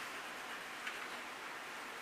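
Quiet room tone: a faint steady hiss, with one small click about a second in.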